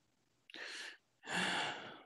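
A person's audible breaths into a close microphone between phrases: a short breath about half a second in, then a longer, louder one.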